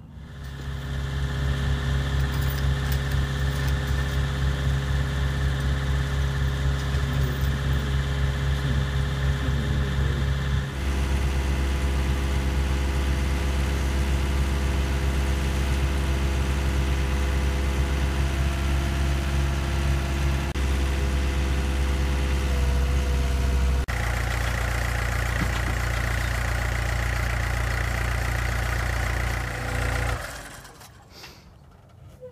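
Engines of a mini excavator and a small dump cart running steadily while filling in a grave. The engine note shifts abruptly about ten seconds in and again later on.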